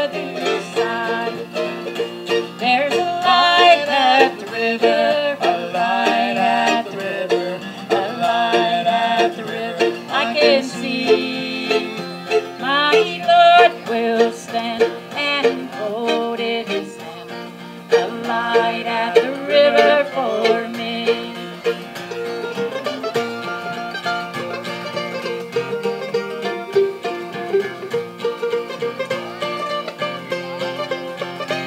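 Mandolin and acoustic guitar playing an instrumental break in a bluegrass gospel song, between sung verses. The lead line wavers and bends through the first two-thirds, then the playing settles into a steadier, more even strum.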